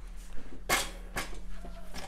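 Handling and movement noise as a man shifts on an aluminium stepladder with a thermometer in hand: two short rustles or knocks, one about two-thirds of a second in and another half a second later, over a faint steady low hum.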